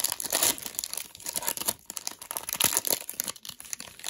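Shiny foil wrapper of a Panini Prizm basketball cello pack crinkling and tearing as it is pulled open by hand, in a run of irregular crackles.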